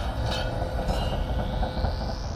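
Sound effect of a mechanical trap gate: a grinding, rumbling clatter with two sharp metallic clanks, then a whine that rises in pitch in the second half.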